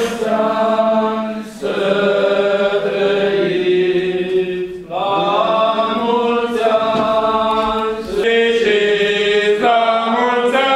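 Orthodox church chant sung by cantors at a lectern: a slow melody of long held notes over a steady low drone note, sung in phrases with short breaks between them.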